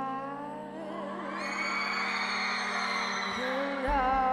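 Live band music: a female singer with a horn section of trumpets and trombones. A rising line at the start leads into a loud, sustained chord about a second and a half in, and the voice comes back singing with vibrato near the end.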